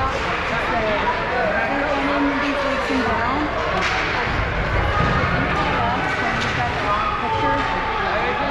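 Ice rink ambience during a youth hockey game: many indistinct voices chattering and calling out over each other, with a few sharp clacks from play on the ice.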